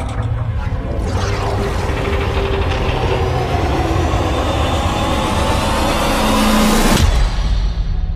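Movie-trailer soundtrack of music and sound effects: a dense mix with a rising whine that builds and cuts off sharply about seven seconds in, leaving a low rumble.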